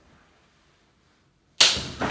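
Near silence, then a sudden loud noise about a second and a half in that fades away over about a second.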